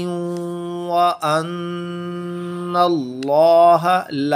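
A man's voice reciting a Quranic verse in tajweed style, chanted with long, steady held notes. Two sustained tones are followed by a wavering, rising and falling phrase near the end.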